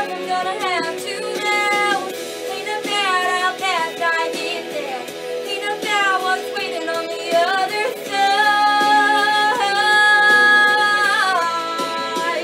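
A young woman singing a song with gliding, ornamented phrases, then holding one long note for about three seconds near the end.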